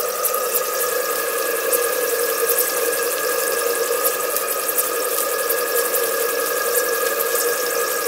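Maxwell Hemmens Max II model steam engine running on low steam pressure, about 20 to 30 psi, at a gentle first run, with a steady hiss and several held whistling tones from the live-steam boiler, which is quite loud.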